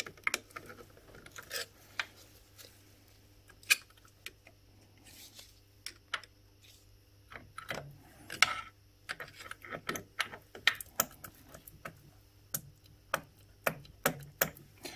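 Irregular small metallic clicks and taps of pliers working at a gear and its circlip on a motorcycle gearbox layshaft, a part that will not come off. A faint steady low hum runs underneath.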